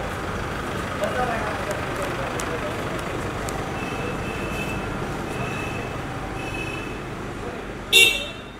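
An SUV moving off slowly among voices and traffic noise, with a few short high beeps in the second half and a short, loud car horn toot at the very end.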